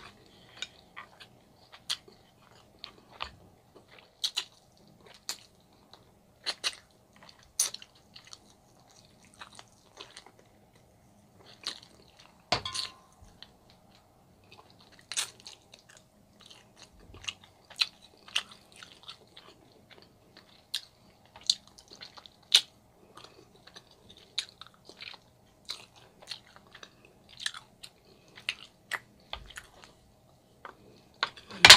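A person chewing and biting meat from barbecued ribs and oxtails: irregular smacks and clicks of the mouth, with one louder knock that rings briefly about a third of the way in.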